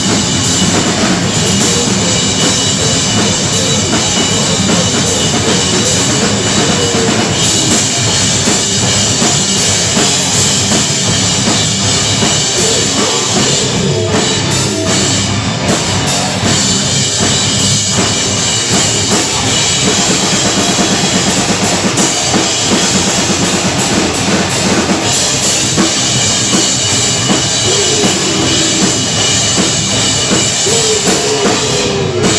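Live heavy rock band playing loud and without a break: distorted electric guitars, bass guitar and a drum kit pounding out a steady beat.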